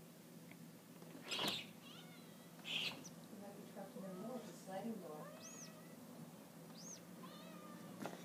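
A kitten stuck between a sliding glass door and its screen, mewing faintly again and again. Two short breathy bursts come in the first three seconds.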